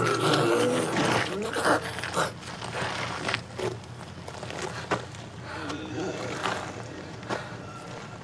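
A zombie woman snarling and growling as she feeds on a victim, from a TV drama's soundtrack, with short sharp clicks scattered through it.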